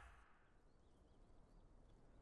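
Near silence, with a few faint, short bird chirps about half a second to a second and a half in.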